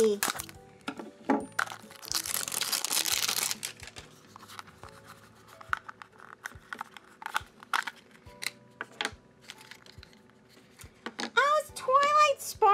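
Plastic packaging crinkling and tearing for about a second and a half, then scattered light clicks and taps as a small plastic blind box is handled and pried open.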